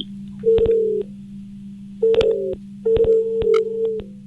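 Telephone ringing tone heard down a phone line as an outgoing call rings unanswered. It comes as three short tones of the same pitch, starting about half a second, two seconds and three seconds in, the last longest, with small clicks over a steady low line hum.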